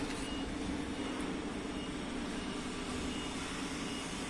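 A steady mechanical drone, a low rumble with a faint even hum, that does not change over the few seconds.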